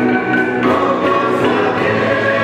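Church choir, mostly young women's voices, singing a hymn in held, sustained notes.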